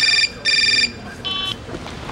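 Mobile phone ringing: two short electronic rings about half a second apart, then a brief beep a little over a second in.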